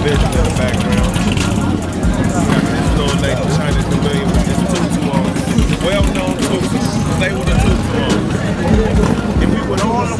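Motorcycle engines running steadily, with people talking over them.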